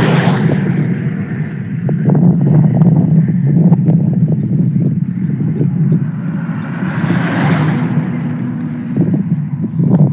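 Wind buffeting a handheld phone's microphone while riding a bicycle on a road: a loud, steady low rumble with irregular buffeting, and a broader hiss that swells and fades about seven to eight seconds in.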